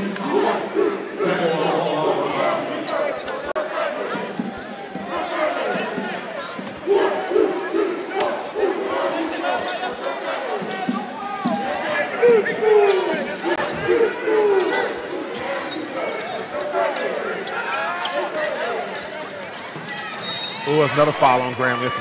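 Basketball game in a gym: the ball dribbling and bouncing on the hardwood court, with players' and crowd voices calling out. Near the end a short referee's whistle blows to call a foul.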